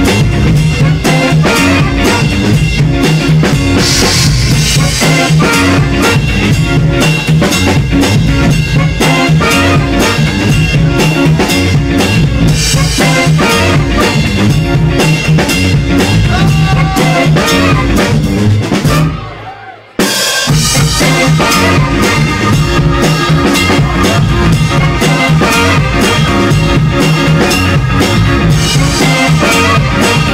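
Live funk band playing, drum kit driving the groove under bass and guitar, recorded loud on a mobile phone. About two-thirds of the way through the band stops briefly and crashes back in together.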